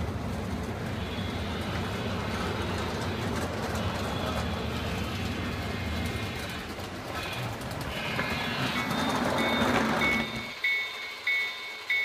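HO scale model train running on the layout's track: a steady rumble that grows louder as the train approaches and stops sharply shortly before the end. Near the end a high ringing tone repeats a little under twice a second.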